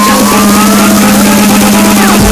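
Electronic dance remix build-up: a fast snare-drum roll under a slowly rising synth sweep and a steady held note.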